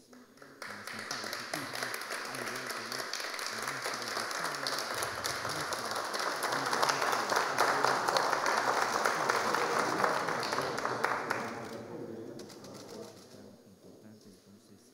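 Applause from a roomful of people, starting abruptly just after the start, swelling for several seconds and dying away near the end.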